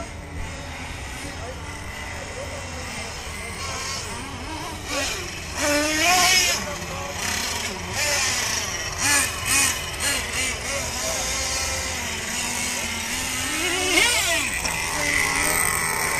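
Radio-controlled off-road cars racing on a dirt track, their motors whining and sweeping up and down in pitch as they accelerate and brake, with a sharp rising sweep near the end.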